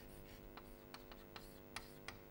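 Chalk on a blackboard: faint, sharp taps and short scrapes, about five in two seconds, as letters are written.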